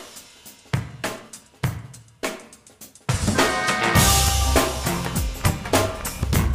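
Song intro played by a band: a drum kit plays a few sparse, separate hits for about three seconds. Then the full band comes in with bass and held pitched instrument notes over steady drumming.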